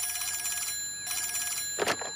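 Cartoon wall telephone ringing with a fast, high trilling ring, two rings in a row, then a short click near the end as the handset is lifted.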